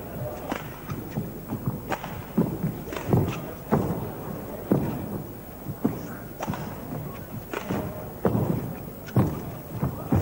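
Badminton rally: rackets hitting the shuttlecock back and forth, roughly one sharp hit a second, mixed with the thuds of players' feet on the court.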